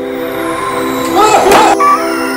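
Horror jump-scare sound effect: a loud, sustained dissonant drone of many steady tones. About a second in, a warbling, distorted shriek swells over it, with a sharp hit at its loudest point.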